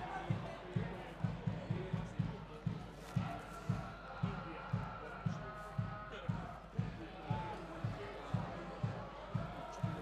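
A supporters' drum beating steadily in the stands, dull low thuds at about three beats a second, with faint crowd voices behind it.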